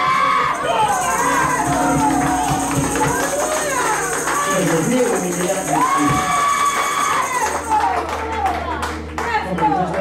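Church praise music with several voices calling out and singing over it, a high steady shimmer through most of it. A deep held bass note comes in near the end.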